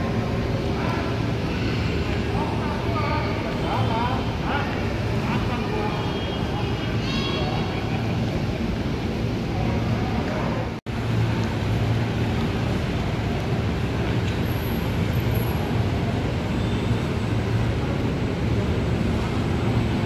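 Busy station concourse ambience: a steady low hum, with scattered voices of people talking in the first half. The sound drops out for an instant about eleven seconds in.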